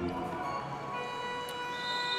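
A steady held tone with several even overtones fades in about half a second in and holds, over low background noise.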